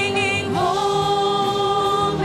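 Church worship team singing a praise song together, the voices moving near the start and then holding one long note.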